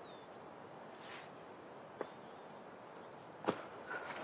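Faint woodland ambience: a low, even hiss with a few small, high bird chirps scattered through it. A single sharp click comes about halfway, and a short, louder noise near the end is the loudest moment.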